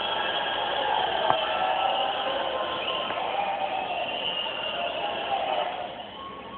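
Sound of a cage-fighting broadcast playing on a television, picked up across the room: a dense, steady wash of noise with no clear separate hits or words.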